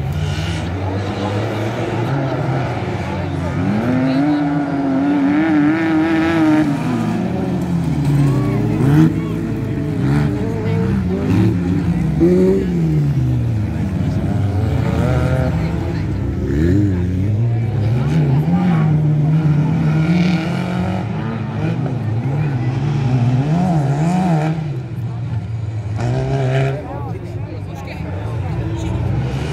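Off-road racing buggy engine revving hard as the buggy drives the dirt track, its pitch climbing and falling again and again with throttle and gear changes.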